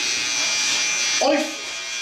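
Electric hair clippers running with a steady high buzz.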